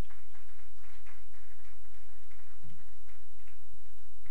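Room noise between speakers: a steady low hum with faint, scattered soft taps and shuffles.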